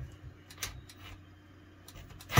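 A few faint, scattered clicks and ticks, four in about two seconds, from a Bosch 12-volt drill-driver and its screw being pressed and settled against a plastic shower-rod wall bracket before the screw is driven.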